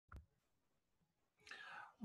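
Near silence, with a faint click near the start and a soft in-breath near the end, just before speech.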